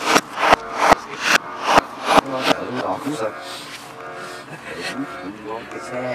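A quick run of about eight sharp knocks, two or three a second, over the first two and a half seconds, with people's voices throughout.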